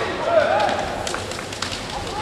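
Kendo fighters' kiai, drawn-out yells that rise and fall in pitch, with a few sharp knocks from the bamboo shinai or stamping feet on the wooden floor.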